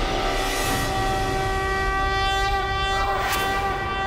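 Dramatic background score: one sustained chord of several steady tones, with a short swish about three seconds in.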